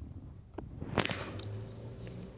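Paper notebook being handled: a sharp swish about a second in, with a few light clicks around it, over a low steady hum.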